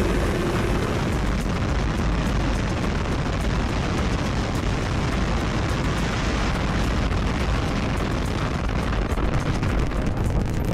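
SpaceX Super Heavy booster's 33 Raptor engines at liftoff on Starship's second flight test: a steady, deep rumble with dense crackling.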